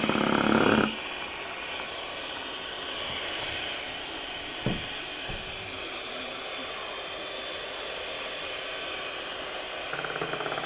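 Electric hand mixer whipping egg whites and sugar into meringue in a metal bowl. The motor is loud for about the first second, then changes abruptly to a quieter, steady whir, with a single knock about halfway through.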